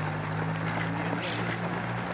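Runners' footsteps on asphalt as a pack passes, over a steady low mechanical hum like an idling engine.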